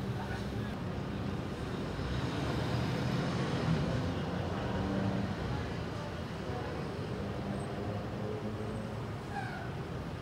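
Steady low rumble of idling vehicle engines, with faint voices in the background.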